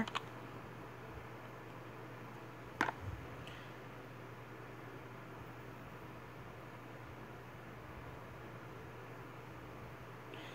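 Quiet room tone with a steady low hum, and one sharp click about three seconds in.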